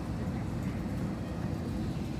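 Steady low rumble inside an airliner cabin on the ground: engine and air-conditioning noise.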